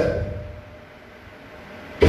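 A pause between a man's loud, shouted phrases in a hall: the last phrase fades out over the first half second, then only low room noise with a faint steady hum.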